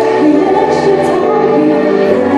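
A woman singing live into a handheld microphone over a backing track, amplified, holding long notes.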